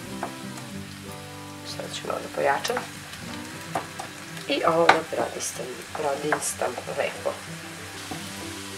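Chopped onion sizzling softly in oil in a nonstick frying pan. About halfway through, a wooden spoon stirs it, with scraping strokes against the pan.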